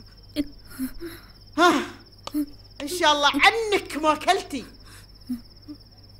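Crickets trilling steadily and high throughout, while a woman's voice cries out in short wavering bursts, about one and a half seconds in and again from about three to four and a half seconds.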